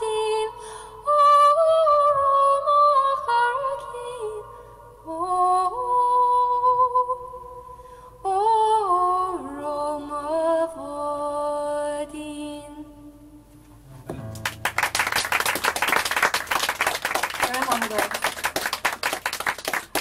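A woman singing an Irish-language rowing song unaccompanied, a slow melody with a wavering vibrato, which ends about thirteen seconds in. An audience then applauds.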